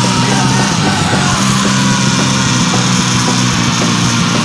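Loud, dense heavy rock music from a band recording, playing steadily with no singing.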